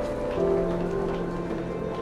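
Background film-score music: held notes that shift in pitch every second or so, over a soft steady hiss.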